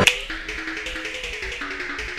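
Music remixed from the AT&T phone boot-animation sound: a sharp click, then a quick stuttering run of short, quieter pitched notes that jump between pitches several times a second.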